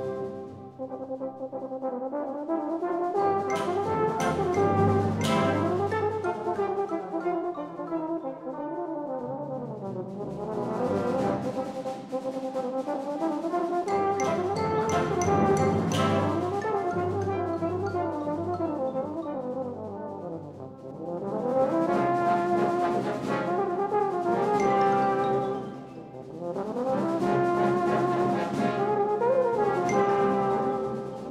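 Swiss military concert band playing a brass-led piece, its phrases swelling and falling, with two brief dips in volume about two-thirds of the way through.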